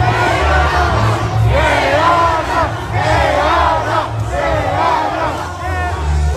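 A large crowd of protesters shouting, many voices overlapping loudly.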